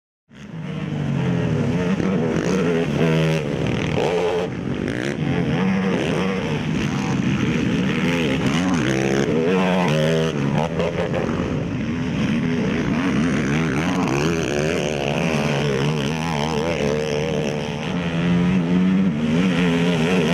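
Race ATV engine revving hard under load, its pitch climbing and dropping again and again as the throttle is worked. The sound cuts in suddenly just after the start.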